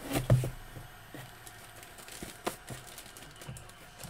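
Hands handling a cardboard box and lifting its hinged lid: a cluster of knocks and taps at the start, scattered light clicks, and one sharp click about two and a half seconds in.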